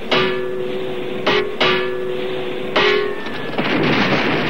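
A hanging bomb casing struck as an air-raid alarm gong: four metallic strikes, each leaving a steady ringing tone. Near the end a dense rushing noise takes over.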